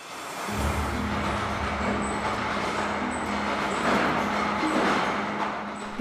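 Small construction train rolling past on the tunnel rails: a steady rumble and hiss with a low hum, building over the first half second.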